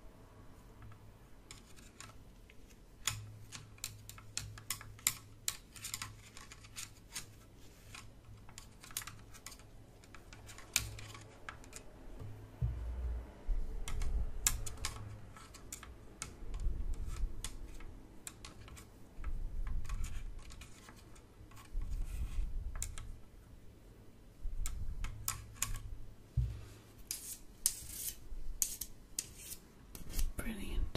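Close-miked ASMR handling sounds: irregular crisp clicks and taps from hands and a prop tool worked right at the microphone. From about halfway in, spells of low bumping and rubbing join them, and the clicks come thicker near the end.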